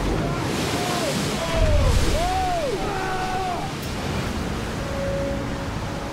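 A large ocean wave crashing over a fishing boat's deck, a heavy rush of water and spray, loudest about a second and a half in.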